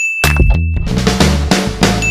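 A bright bell-ding sound effect for a subscribe animation's notification bell, one steady ring lasting under a second at the start. It plays over background music with a beat and bass.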